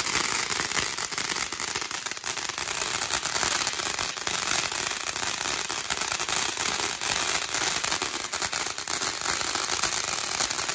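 Consumer ground fountain firework spraying sparks: a steady hiss thick with rapid small crackles.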